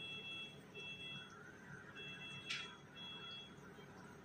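Electronic alarm beeping from hospital bedside equipment, each beep two high notes sounding together, in pairs about every two seconds. A sharp click about two and a half seconds in is the loudest moment.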